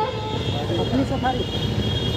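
Outdoor background noise in a pause between a speaker's sentences over a public-address system: a steady low rumble, with faint distant voices about a second in.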